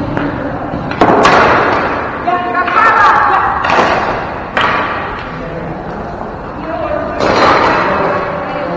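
Ball hockey in a gym: sharp knocks of sticks and ball, about a second in and again at about four and a half seconds, echoing in the large hall, with players' shouts.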